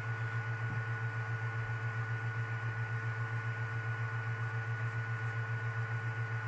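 A steady low hum with a fast, even flutter, and faint steady higher tones over it. It sounds like background machine or electrical hum; no distinct handling knocks stand out.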